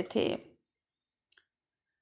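The last word of a woman's voice trails off, then near silence broken by one short, faint click a little over a second in.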